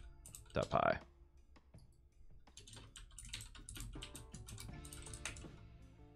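Typing on a computer keyboard: a quick, irregular run of key clicks as code is entered, with faint background music.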